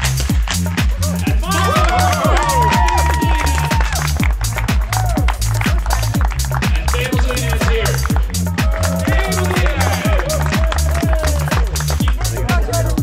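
Background electronic music with a steady, fast beat and a stepping bass line.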